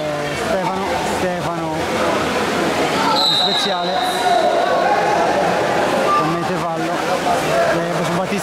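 Voices shouting and calling around a water polo pool, with a short high whistle blast about three seconds in.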